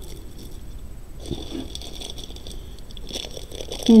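Faint handling noise of beaded jewelry: a glass-and-plastic bead bracelet and necklaces shifting and clicking softly as they are set down on a pile.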